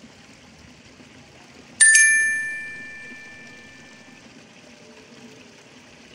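A bright bell chime struck once, about two seconds in, ringing out and fading over the next two seconds: the notification-bell sound effect of a subscribe-button animation.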